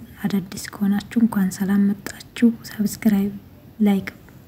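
Speech only: a woman's voice talking, with no other sound standing out.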